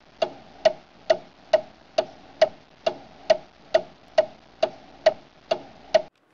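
Clock ticking, a steady sharp tick about twice a second, starting abruptly out of silence: a countdown sound effect.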